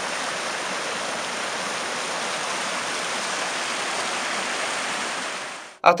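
Fast stream rushing and foaming over boulders, a steady hiss of water that cuts off suddenly near the end.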